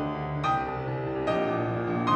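Concert grand piano played solo in a classical recital: sustained chords ringing, with new chords struck about half a second and just over a second in.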